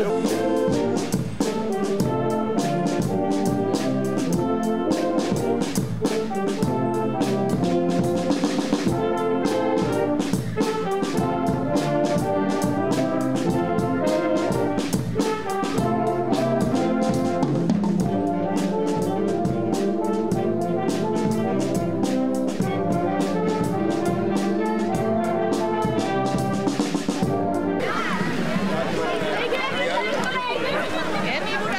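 An outdoor wind band with trombones and trumpets plays a piece over a steady drum beat. Near the end the music gives way to crowd chatter.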